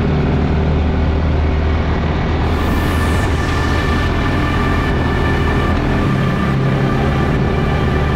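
Music soundtrack playing over the steady running of a vehicle engine, with a sweeping high shimmer in the music about two and a half seconds in.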